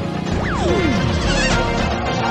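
Background music with an added comedy sound effect: a single tone sliding steeply down in pitch about half a second in, followed by a crash-like hit around a second and a half in.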